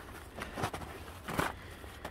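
Footsteps in snow, a few separate steps, the loudest about one and a half seconds in.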